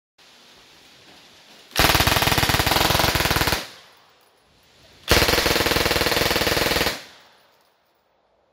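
Two full-auto bursts from a re-welded PPSh-41 submachine gun chambered in 9mm, each a rapid, even string of shots lasting about two seconds, with a short pause between them.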